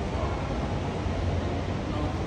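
Steady background noise with a low hum underneath and no distinct sounds standing out: the ambience of a large public space.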